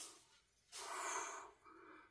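A quiet, short breath out through the nose, lasting under a second and starting a little under a second in.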